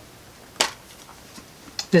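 A single sharp click as a metal steelbook Blu-ray case is opened, followed by a few faint handling ticks.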